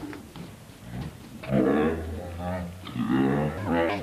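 Garbled, voice-like sounds from a failing VHS tape's playback, two drawn-out utterances of about a second each over a steady low hum. The distortion comes from a worn or damaged tape or a faulty VHS player.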